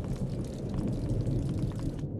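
Raindrops hitting dry desert sand: many small, scattered ticks over a steady low rumble.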